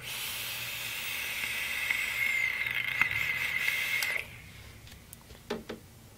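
Ambition Mods C-Roll rebuildable dripping atomizer firing during a draw: the coil sizzles and air hisses through the airflow, with a light crackle, for about four seconds, then stops suddenly.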